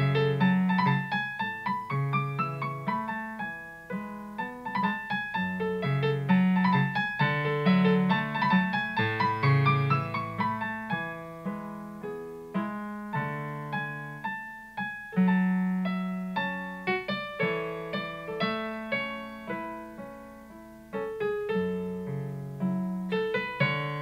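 Solo piano piece: a melody of struck, decaying notes over a repeating bass line, growing quieter around twenty seconds in and then picking up again.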